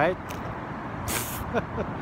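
Steady background rumble of city road traffic, with a brief sharp hiss about a second in.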